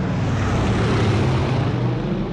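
Propeller-airplane flyover sound effect standing for a C-54 transport passing low overhead: a low engine drone and rush of air that swells to a peak about a second in and then fades.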